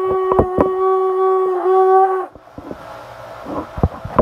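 A conch shell blown as a horn: one long, steady note that wavers slightly and then stops about two seconds in.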